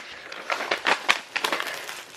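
Clear plastic wrapping around a compressed, foam-filled bean bag chair crinkling and crackling irregularly as hands press and handle it.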